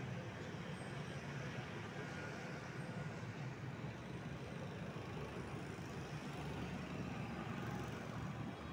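Steady, even low rumble of outdoor background noise, with no distinct events. The crawling snail itself makes no sound that can be heard.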